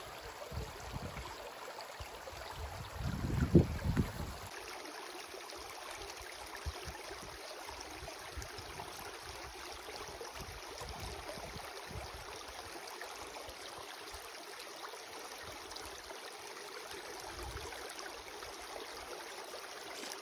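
Small forest brook running steadily over and through a beaver dam's stick pile. A brief low rumble about three to four seconds in is the loudest moment.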